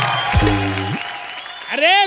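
Studio audience applauding, the clapping fading away, mixed with a short low music sting about half a second in. A man's voice exclaims near the end.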